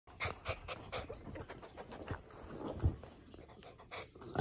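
Small dog panting hard in quick breaths, about four a second at first and then less regular, during a tussle on a couch. A single thump about three seconds in is the loudest sound.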